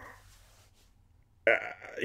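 A man's breathy exhale trailing off, a pause of about a second, then a short sharp breath about a second and a half in, just before he speaks again.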